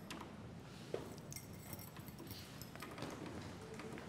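Faint, scattered clicks and rustles of people shifting about and handling paper sheets, with one sharper click about a second in.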